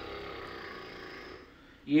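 A man's long, breathy hesitation sound while he searches for the next word, fading out about a second and a half in. He starts speaking again just before the end.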